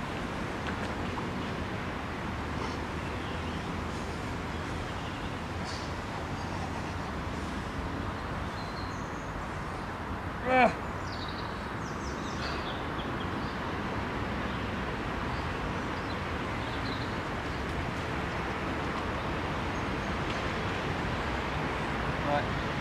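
Steady outdoor background noise with faint bird chirps scattered through it. About halfway through comes one short, loud sound with a falling pitch.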